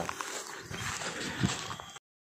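Camera handling noise and footfalls on turf as the phone camera is carried, with scattered faint clicks and one dull thump about one and a half seconds in.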